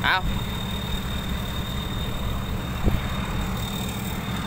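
A vehicle engine idling steadily, with a thin steady high whine above it and a single brief knock about three seconds in.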